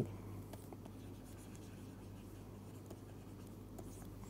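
Faint scratching and light taps of a stylus writing on a tablet screen, over a steady low electrical hum.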